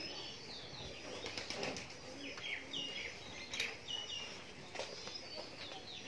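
Small birds chirping, many short high calls, with a few brief rustles.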